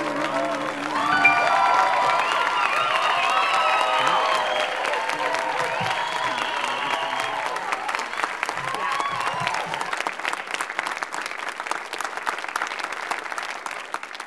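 Audience applauding, with voices cheering and calling out over the clapping for the first ten seconds or so. Then the clapping thins and fades out near the end.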